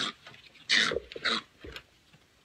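Virginia opossum hissing under a towel as it is covered and held: two short breathy hisses about half a second apart, its defensive threat noise at being handled.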